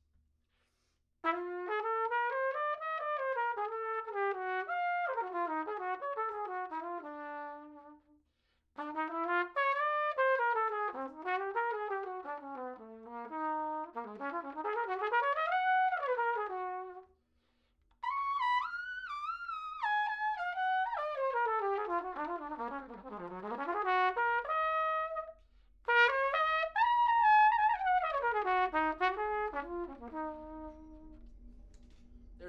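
Adams Hornet hybrid cornet-trumpet played with an ultra-deep, short-shank mouthpiece, giving a dark cornet sound. Four melodic phrases separated by short breaths. The third climbs to a high note and then falls to a low one.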